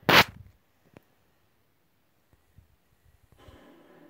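A single short, loud burst of noise right at the start, lasting about a third of a second, then one faint click about a second in; the rest is nearly quiet.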